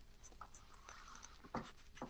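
Near silence: room tone with a few faint light ticks and a soft knock about one and a half seconds in.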